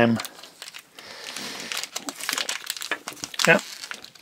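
Crinkling of a Treasure X Aliens toy's metallic plastic wrapper pouch, slit open and handled as the slime-covered contents are pulled out: a run of small crackles and rustles starting about a second in.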